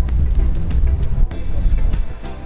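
Background music with a heavy bass. A sharp mechanical click from a Nikon D610 DSLR shutter sounds over it a little past a second in.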